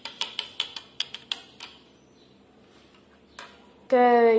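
Small plastic toy figures tapping on a granite countertop: a quick run of about ten sharp clicks in the first second and a half, then one more click near the end.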